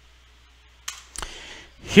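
Two short, sharp clicks about a third of a second apart over faint room hiss, followed by a man's voice starting at the very end.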